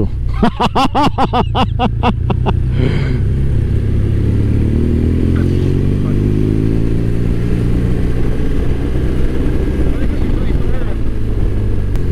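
A rider laughing in quick pulses for the first few seconds, over a motorcycle engine and low wind rumble on the helmet microphone. After the laugh, the motorcycle engine runs on, its note rising and falling with the throttle through the bends.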